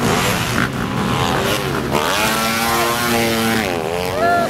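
Several supercross dirt bikes racing, their engines revving hard. The engine pitch dips and climbs back about two seconds in and again near the end, with held notes in between.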